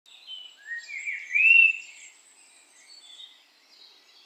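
Birds chirping in woodland, with a few short rising whistled notes in the first two seconds, the loudest about one and a half seconds in, then only faint calls.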